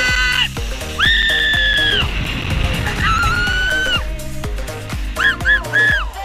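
Riders screaming on a drop-tower fairground ride: two long held screams of about a second each, then three short cries near the end, over music with a steady bass line.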